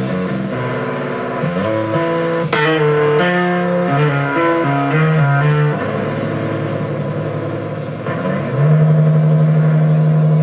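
Electric bass guitar playing a hard-rock riff along with music, the notes changing every half second or so; near the end a long low note is held.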